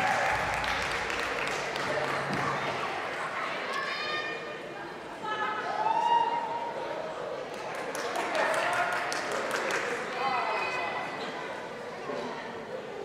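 Clapping from a small audience in a large hall, dying away over the first few seconds, then scattered cheering: separate shouts and whoops. A run of light clicks comes around the middle.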